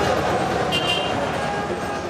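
Steady city street traffic noise from passing cars, with a brief high-pitched tone a little under a second in.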